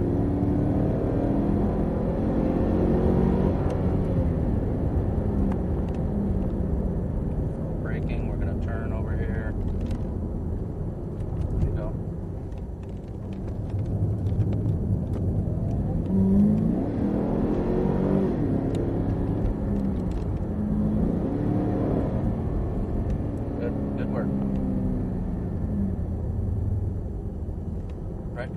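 Cadillac CTS-V's V8 heard from inside the cabin on track, its note rising under acceleration and falling off again several times, over a steady low drone of road noise.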